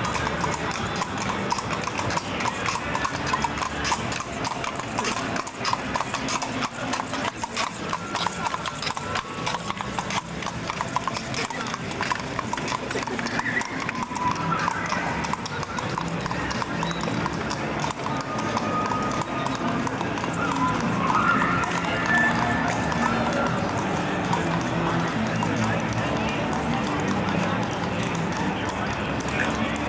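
Hooves of a pair of carriage horses clip-clopping on pavement as they pull a passenger carriage past, with voices around.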